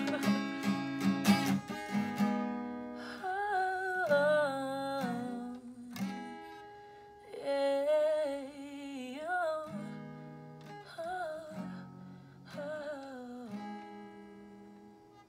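Acoustic guitar strummed quickly for the first couple of seconds, then chords left ringing under a woman's wordless singing with vibrato, in several drawn-out phrases that grow softer toward the end.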